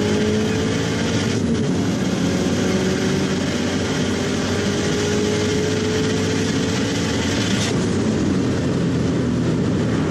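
Cabin sound of a Subaru WRX STi's turbocharged flat-four engine pulling on the road, with the engine note rising slowly for several seconds. About three-quarters of the way through, a short rush of hiss comes as the rising note breaks off.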